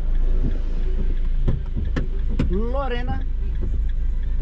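Stationary car idling, heard from inside the cabin as a steady low rumble. Two sharp clicks about two seconds in, then a brief wordless vocal sound that rises and falls in pitch near three seconds.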